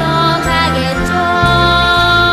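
Orchestra playing the accompaniment of a children's song, with long held notes over a low part that changes about every half second.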